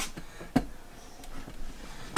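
Handling noise as the camera is swung around: two light knocks about half a second apart, then faint rustling over a low hum.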